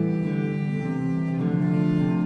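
Live baroque chamber music: bowed strings playing sustained, slowly changing notes, with low bowed notes prominent.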